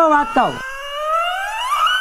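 Edited-in comedy sound effect: a quick downward swoop, then a single whistle-like tone that glides slowly upward in pitch for about a second and a half.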